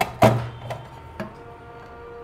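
Sheet-metal amplifier cabinet cover being handled as it is lifted off: a knock just after the start, then a couple of lighter clicks, over faint background music.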